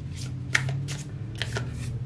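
Tarot cards being handled and drawn from the deck: a quick, irregular series of short card snaps and slides, about half a dozen in two seconds.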